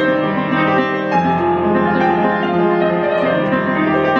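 Upright piano played with both hands: held chords in the bass with melody notes above, new notes struck every second or so and ringing over one another.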